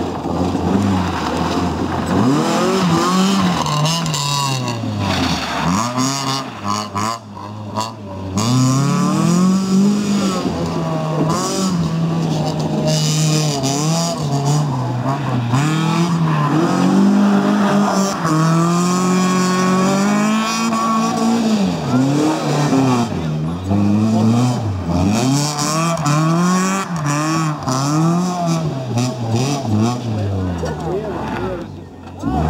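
FSO Polonez Caro rally car's engine revving hard, its pitch climbing and falling again and again as it is driven through gravel corners. There is a short dip about seven seconds in.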